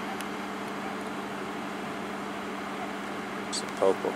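A steady machine hum with one constant low tone, unchanging in level.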